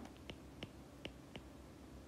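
Faint light ticks of a stylus tip touching a tablet's glass screen during handwriting: about five short clicks, unevenly spaced.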